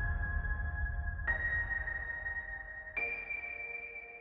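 Film trailer music under the title card: held, ringing electronic tones over a low rumble that fades. A higher note strikes in about a second in and another higher still near the end, so the sting climbs in steps.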